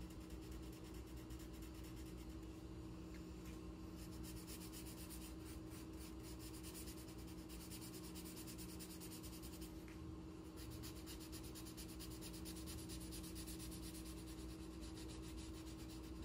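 Black Sharpie felt-tip marker colouring on paper: faint, quick back-and-forth scratchy strokes filling in a shape, over a low steady hum.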